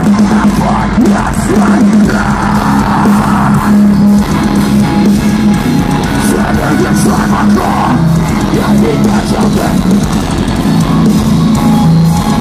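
Metalcore band playing live through a PA: distorted electric guitars, bass and drums in a heavy, steady riff. The sound is loud and harsh, as heard through a phone's microphone close to the stage.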